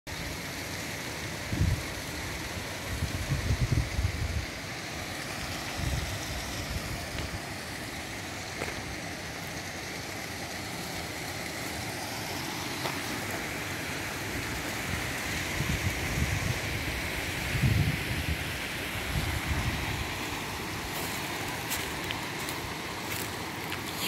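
The Luzaide river rushing steadily, with wind buffeting the microphone in several low gusts and a few faint clicks near the end.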